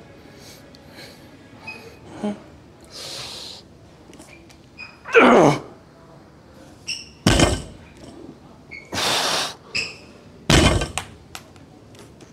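A 315-pound barbell with rubber bumper plates being deadlifted for reps: forceful breaths, a strained grunt falling in pitch about five seconds in, and the loaded bar set down on the wooden lifting platform with two deep thuds, about seven and ten and a half seconds in.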